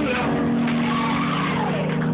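Live gospel song: a man's singing voice over a sustained accompaniment chord, the voice sliding down in pitch in the second half.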